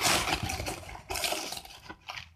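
Crêpe paper rustling and crinkling as hands grip and turn a gathered paper skirt, in uneven surges that fade near the end.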